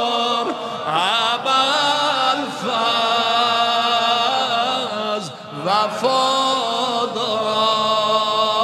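A man chanting a mersiye, an Azerbaijani Shia mourning elegy, in long held notes with ornamented turns. There is a brief break about five seconds in, then the next phrase rises in.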